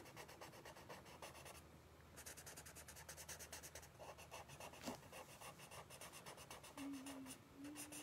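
Sharpie marker scratching faintly across sketchbook paper in rapid, even back-and-forth strokes as a section of a drawing is colored in solid black, with a brief pause about two seconds in.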